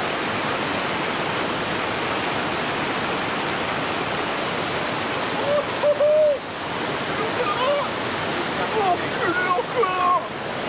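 River water rushing steadily over rocks. Brief wordless voice sounds from the men come in about halfway through and again several times near the end.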